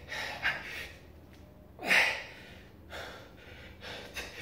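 A man breathing hard through push-ups: sharp, noisy exhales and gasps about once a second, the loudest about two seconds in, as he is winded near the end of a long set.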